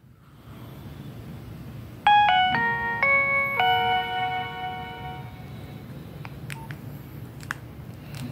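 A Nokia 3100 phone playing its short power-on melody through its small speaker: about six quick notes stepping from one to the next, the last note held and fading. The tune shows that the phone boots and its speaker works. A few faint clicks follow near the end.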